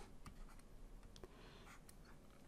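Near silence, with a few faint ticks and light scratching from a stylus writing on a tablet screen.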